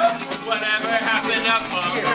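Live folk-punk band music played in a crowded room, a jingling rattle of hand percussion keeping the beat, with several voices singing and shouting along.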